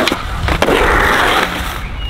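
Skateboard trick on a concrete curb ledge: a sharp clack of the board right at the start and a second knock just after it, then about a second of scraping as the trucks grind along the ledge, cutting off just before the end.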